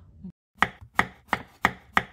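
Five sharp, evenly spaced knocks, about three a second, edited in as an intro sound effect.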